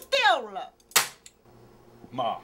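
A single sharp crack about a second in, right after a voice.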